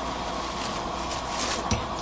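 A pot of seaweed soup at a rolling boil: a steady bubbling hiss, with a few faint clicks and a soft knock near the end.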